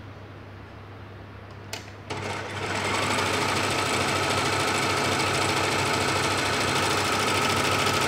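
Brother overlock (serger) sewing machine starting about two seconds in, just after a click, and quickly building up to a steady running speed as it stitches along the fabric edge.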